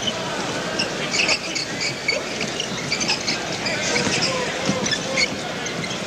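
Arena crowd noise from a live basketball game, with the ball bouncing on the court and many short high sounds scattered through it.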